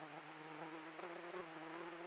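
A flying insect buzzing close to the trail camera's microphone: a steady low-pitched buzz over the camera's hiss.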